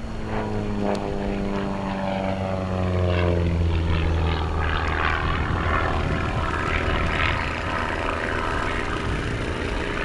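Van's RV-4 single-engine propeller plane flying aerobatics. Its engine-and-propeller drone falls slowly in pitch over the first five seconds or so, then turns to a rougher, hissier sound.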